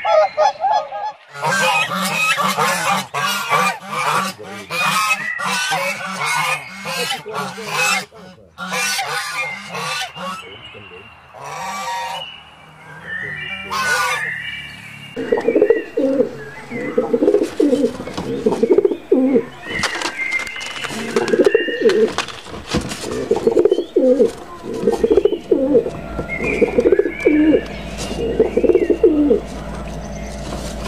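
Geese honking in a dense run of repeated calls, then from about halfway pigeons cooing in repeated low phrases.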